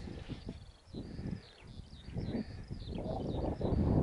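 Small birds chirping high and repeatedly over open moorland, with a low rumble of wind on the microphone that grows louder toward the end.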